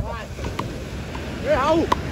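Frescobol rally: sharp knocks of paddles striking a small rubber ball, about once a second, over wind on the microphone and surf. A voice rises loudly near the end.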